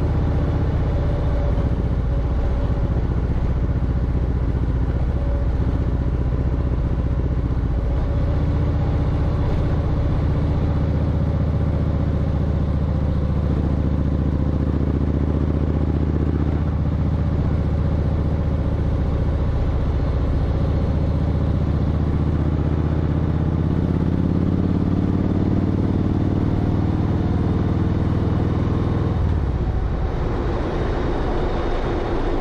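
V-twin motorcycle engine running at road speed under wind and road noise. Its pitch climbs steadily as the bike accelerates in the last third, then drops sharply just before the end.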